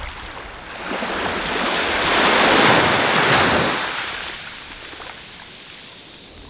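Ocean surf: a wave builds, breaks and washes up, loudest a little past halfway, then dies back to a low rush of water.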